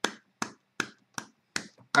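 One person clapping hands, about six sharp claps at an even pace of roughly two and a half a second.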